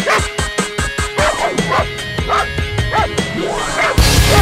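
German Shepherd giving several short barks and yips over background music with a quick, regular beat.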